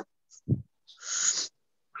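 A person's voice over a video call: a short low hum-like murmur about half a second in, then about half a second of breathy hiss, like an exhale or a whispered 'sh'.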